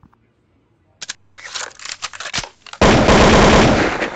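Audio of a phone-recorded clip cuts in about a second in as crackling noise, then turns very loud and heavily distorted just before three seconds in, as though the phone's microphone is overloaded.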